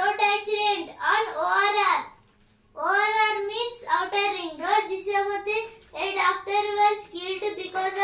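A boy speaking in a high, sing-song voice in phrases, with a short pause about two seconds in.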